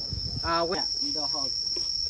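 Steady high-pitched insect drone, one unbroken tone, with a voice speaking briefly twice over it.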